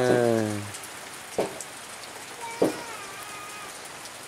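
Steady rain falling, with two sharp taps about a second and a half and about two and a half seconds in.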